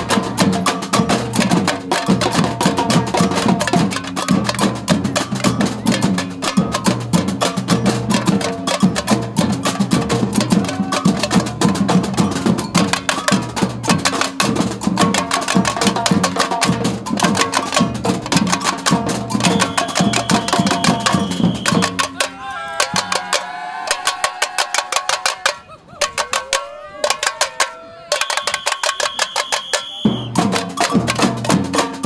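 Samba batucada drum group playing: shoulder-slung bass drums under a busy rhythm of higher drums and hand percussion. About 22 seconds in, the full drumming drops out for a few seconds of sparse hits with gliding pitched calls over them, then comes back in near the end.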